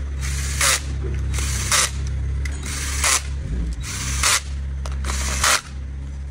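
Cordless drill with a long extension and socket running on the valve cover bolts of a BMW N57 six-cylinder diesel. The motor hums steadily with brief pauses, and a short hissing, rattling burst comes about once a second.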